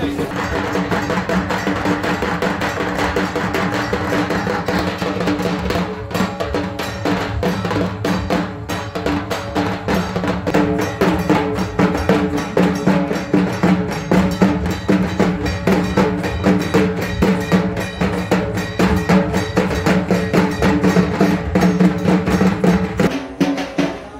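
A group of hand-held barrel drums (dhols) played together in a fast, even beat for festival dancing, over a steady ringing drone.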